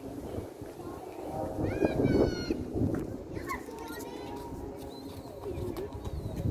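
High-pitched children's voices calling out in a playground, the loudest call about two seconds in, over a steady outdoor background hum.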